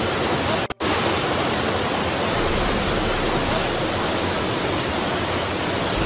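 Flash-flood torrent rushing down a street: a steady, loud rush of water. The sound drops out for an instant under a second in.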